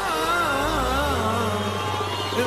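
A male singer holding one long, ornamented Arabic tarab vocal line with a wide, even vibrato over orchestral accompaniment; the line dies away just before the end.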